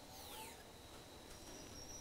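Near silence between spoken phrases, with only a faint background hiss.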